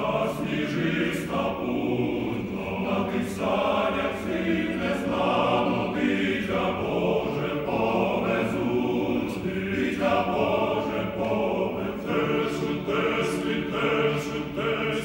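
Men's choir singing a cappella in full, sustained chords, the words' hissing consonants landing together across the voices.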